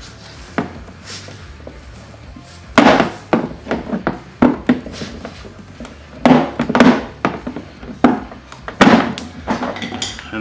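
Irregular hard plastic knocks and clacks as a clipped-in piece of body trim is worked loose and pulled off the lower side of a Lexus GX470. The knocking starts about three seconds in, after one earlier click, and carries on to the end.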